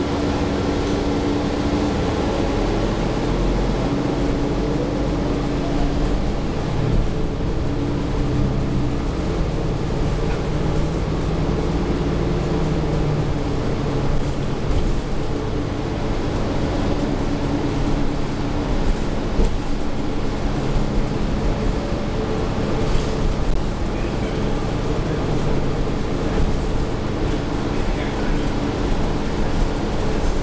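Cabin sound of a New Flyer XDE40 hybrid city bus under way, with its Cummins L9 diesel and Allison EP40 hybrid drive running. A whine rises about three seconds in as the bus pulls away, then gives way to steady drivetrain hum with road noise.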